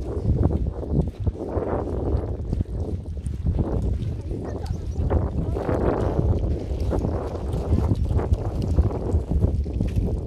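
Wind buffeting the microphone, a steady heavy rumble with louder gusts every few seconds.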